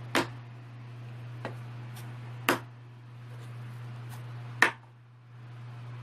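A plastic fish-food canister is flipped and knocks down onto a wooden tabletop: one sharp knock at the start, a faint tap, another knock about two and a half seconds in, and the loudest knock near five seconds. A steady low hum runs underneath.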